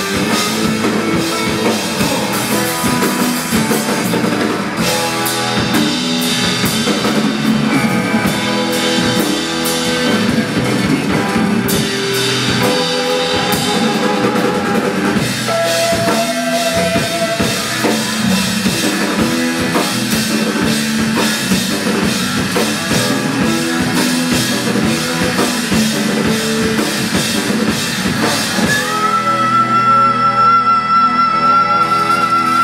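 Live rock band playing: strummed acoustic guitars, electric bass and a drum kit keeping a steady beat. Near the end a high held note rises in and rings over the band.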